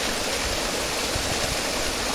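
Steady rushing and splashing of water churned by crowded fish thrashing in a seine-netted pond enclosure.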